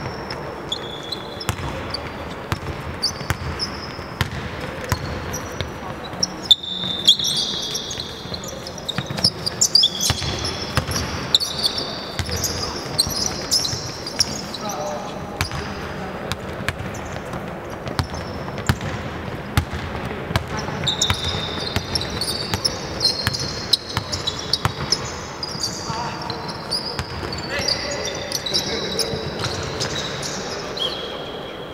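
Basketballs bouncing repeatedly on a hardwood court, many sharp thuds, mixed with short high-pitched squeaks of sneakers on the floor. Players' voices call out now and then.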